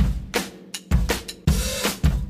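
Background music driven by a drum kit beat: bass drum and snare hits about twice a second, with cymbals.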